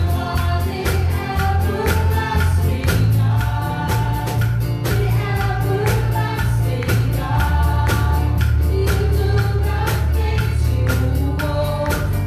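Live contemporary gospel worship song: a small group of women and a man singing together into microphones over keyboard accompaniment with a deep bass line and a steady percussion beat.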